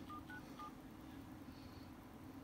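Samsung Galaxy A50 phone dialer sounding short touch-tone (DTMF) key beeps as digits are tapped in: three quick beeps in the first second, for the keys 4, 9 and 7, then only a faint steady hum.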